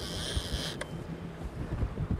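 A boat's engine hums steadily under wind buffeting the microphone. A high buzz sounds for the first part of it, and there is a single click just under a second in.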